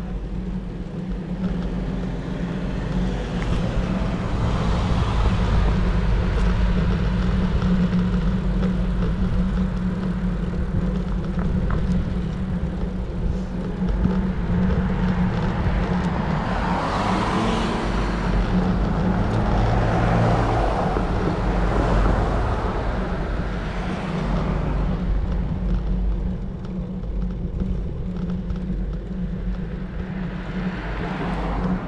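Steady wind rumble on the microphone of a camera riding along on a road bicycle, mixed with tyre and road noise. The noise swells louder around the middle as a car goes by.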